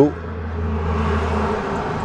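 Steady low hum with a soft hiss of moving air inside a parked Toyota Fortuner's cabin, from the idling engine and the air-conditioning. The low hum fades about a second and a half in.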